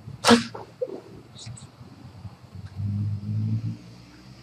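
A man's sharp, noisy breath about a third of a second in, then a low moan lasting about a second near the end.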